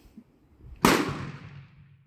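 A single gunshot about a second in, sharp and loud, its report dying away over about a second.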